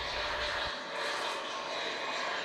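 Twin turbofan engines of a JASDF T-400 jet trainer passing overhead on a landing approach, a steady jet hiss with no change in pitch.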